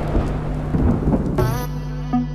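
Thunderstorm sound effect in a music video's intro, with rumbling thunder and rain noise over a steady low drone. A voice comes in near the end.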